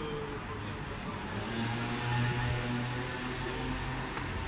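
Street traffic: a motor vehicle's engine running close by, a low steady hum that swells about a second and a half in and peaks near the middle.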